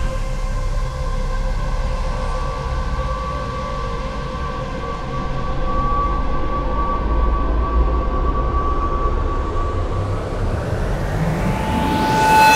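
Ambient intro drone music: a deep rumble under sustained held tones, swelling into a rising whoosh over the last couple of seconds that cuts off sharply.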